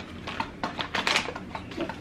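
Light, irregular clicking and rustling from food and packaging being handled at a table: an MRE pouch being handled and a knife on pressed bread.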